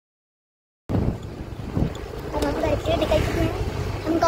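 Wind buffeting the microphone as a low, steady rumble, which starts suddenly about a second in after dead silence. Faint voices come through under it in the second half.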